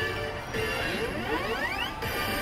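Video slot machine playing its electronic game music and sound effects, with a run of rising tones climbing over about a second and a half.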